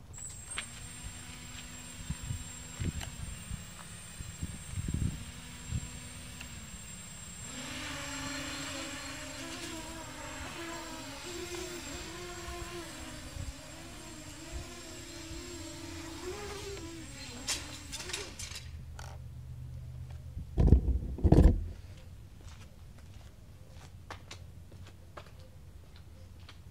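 Nighthawk Pro racing quadcopter's brushless motors running with a steady high whine and a lower hum whose pitch wavers up and down as the throttle changes, then cutting off about two-thirds of the way through. A couple of loud thumps follow shortly after.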